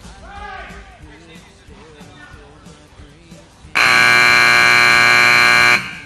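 Arena timer buzzer sounding one loud, steady blast of about two seconds that cuts off abruptly, marking the end of a timed ranch sorting run. Faint voices run underneath before it.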